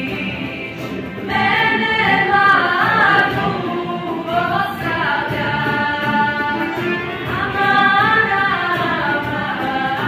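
A small group of women singing together on stage, their voices blending in sustained phrases; one phrase fades out and the next begins about a second in.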